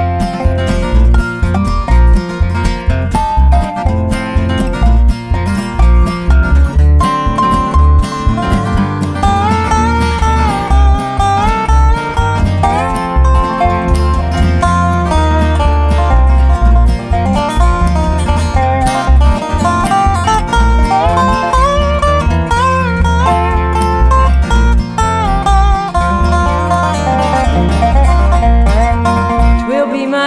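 Instrumental break in a gospel song: acoustic guitar with a bass line under it, and a lead instrument playing the melody from about eight seconds in.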